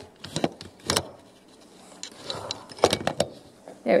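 A few scattered light clicks and taps between quiet stretches.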